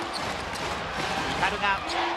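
A basketball being dribbled on a hardwood court, with short bounces over the steady noise of an arena crowd.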